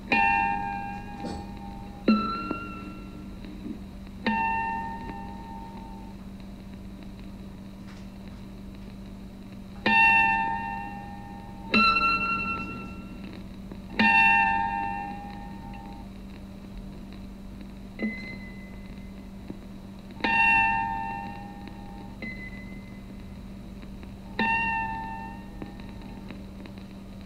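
Chime-like ringing notes from the soundtrack of an animated physics cartoon, played back over speakers in a room. About ten notes, each struck and then fading, come a couple of seconds apart, with a steady low hum under them.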